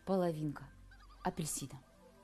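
A woman's short wordless vocal sound, falling in pitch, then a brief breathy sniff about a second and a half in as she smells a halved orange.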